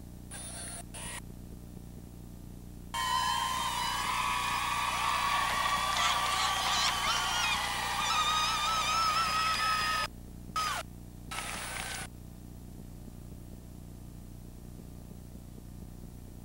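Many high-pitched voices screaming and cheering together in celebration of the championship win. The cheering starts suddenly about three seconds in and cuts off abruptly about seven seconds later, followed by a couple of short bursts. A steady low hum runs under the quieter parts.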